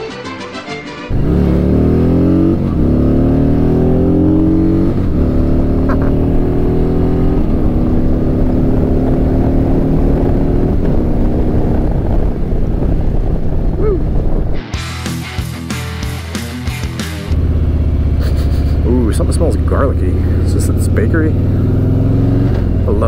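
The Harley-Davidson Electra Glide Standard's Milwaukee-Eight 107 V-twin pulls away about a second in, rising in pitch through several gears and then settling into a steady cruise. For a few seconds past the middle the engine's low note drops back under a rapid fluttering, then the engine comes back in. A short bit of other audio plays before the engine starts.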